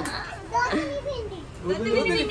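Speech only: people talking, a young child's voice among them.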